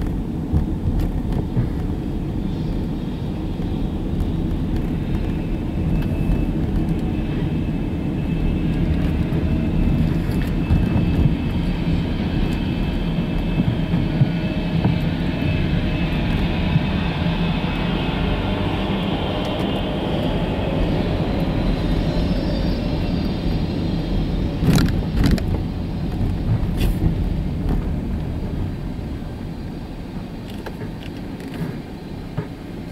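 Steady low road and engine rumble heard from inside a slowly moving car, with a few sharp clicks about 25 seconds in.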